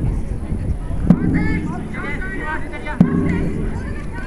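Jugger timekeeping drum struck twice, about two seconds apart, each beat a sharp knock with a short low ring, counting off the game's stones; players' shouts in between.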